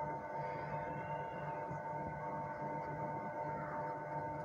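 Faint steady background hum made of several held tones, with no distinct event standing out.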